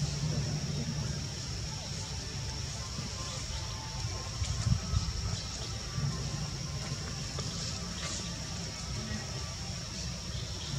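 Outdoor ambience: a steady low rumble under a steady high-pitched hum, with faint voices and two brief louder thumps about halfway through.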